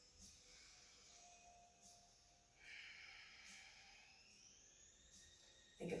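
Faint breathing: a soft, hissy exhale begins about two and a half seconds in and trails off slowly, over near-silent room tone. It is a slow, deliberate belly breath, the exhale drawing the abdominals in.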